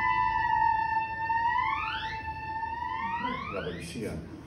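Theremin holding a steady note, then sliding steeply upward twice, once about halfway through and again near the end.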